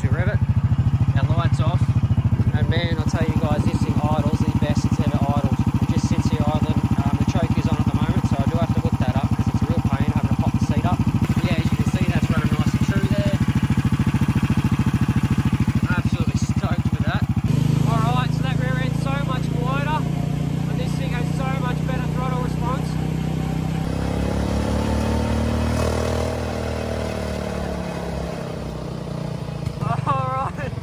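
Small single-cylinder 440cc engine in a golf-cart buggy running steadily, then, after a cut, driving under load with its note rising and falling.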